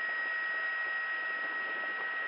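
Steady hiss with a constant high-pitched whine on an open helicopter intercom line, heard between the crew's remarks.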